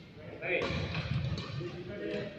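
Indistinct voices talking, with a low thump beneath them.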